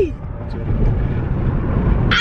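Steady low road and engine rumble inside a car's cabin while driving at highway speed.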